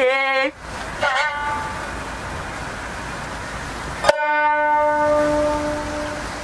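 Closing notes of a jiuta shamisen solo: a held note slides in pitch and breaks off about half a second in, and a short bent note follows a second in. After a pause filled with steady hiss, one last sharply struck note about four seconds in rings on, slowly fading.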